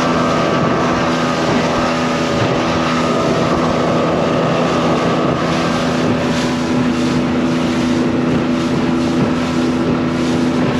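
Outboard engine of a 22-foot bay boat running steadily at speed, its drone mixed with the rush of spray and water along the hull. Wind buffets the microphone.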